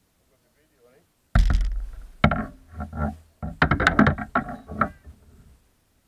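Irregular knocks and thumps start suddenly a little over a second in, after near quiet, with a short lull near the end.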